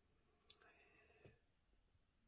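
Near silence: room tone, with one faint short click about half a second in and a very faint trace of sound after it.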